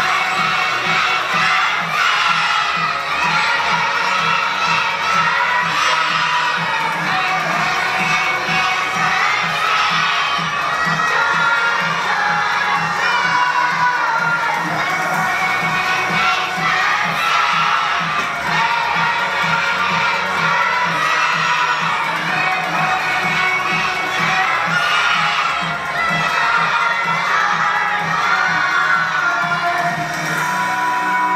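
A large group of young children shouting and cheering together, loud and continuous.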